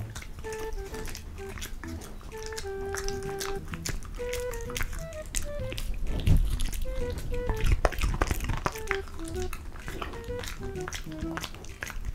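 Samoyed dog chewing a crisp raw zucchini slice close to a microphone: wet, irregular crunching, heaviest in the middle of the stretch. Light background music with a plucked melody plays throughout.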